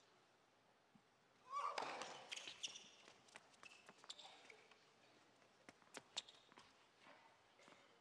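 Faint tennis rally on an indoor hard court: a serve about one and a half seconds in, with a short vocal grunt, then a string of sharp racket hits and ball bounces over the next few seconds.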